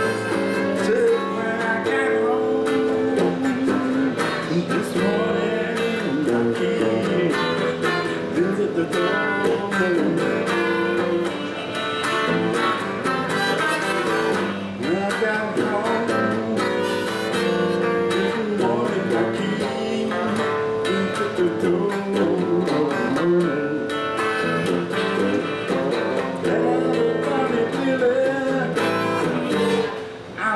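Live blues-style music: a Telecaster-style electric guitar played along with a harmonica blown from a neck rack, with bending, wavering held notes over a steady guitar rhythm.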